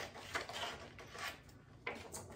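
Scissors trimming sheets of sublimation paper: a few faint snips and paper rustles, with a sharper snip near the end.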